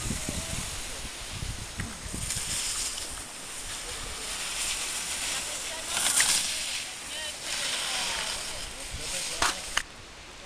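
Skis sliding and scraping over packed snow, a hiss that comes in surges, loudest about six seconds in and again near the end. Wind rumbles on the microphone at the start.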